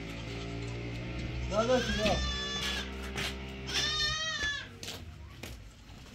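Two long, wavering bleats from farm livestock, the second starting about two seconds after the first, over background music that stops just after four seconds in.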